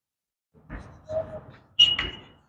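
Chalk scratching on a blackboard as a word is written, in a few short strokes, with a brief high squeak near the end.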